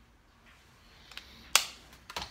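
Two sharp clicks of small makeup items being handled on a table, a faint one just over a second in and a much louder one about half a second later.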